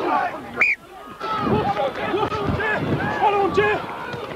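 Men's voices shouting calls one after another, with a short lull about a second in.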